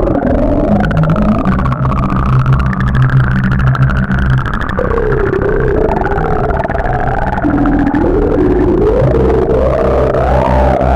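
Electronic music: synthesizer tones gliding up and down over sustained low bass notes. The bass drops out for a few seconds midway and returns near the end.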